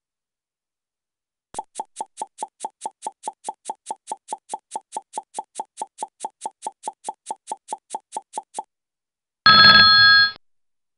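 Countdown timer sound effect: quick, even ticks, about four or five a second, for about seven seconds, then a louder bell-like ding near the end signalling time up.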